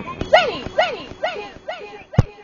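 Four short barking calls, each rising and then falling in pitch, about two a second, made by a voice run through a voice-changer effect.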